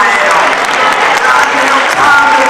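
An audience applauding, with a man's impassioned, shouted speech carrying over the clapping.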